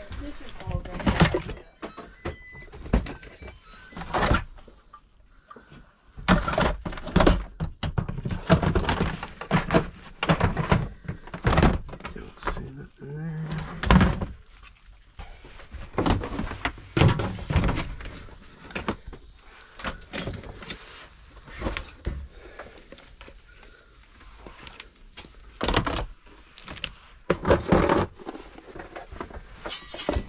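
Plastic storage totes and the toys inside them knocking and clattering as they are moved and rummaged through, a run of irregular thunks.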